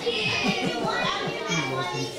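Several children laughing and talking at once, in quick repeated bursts of laughter.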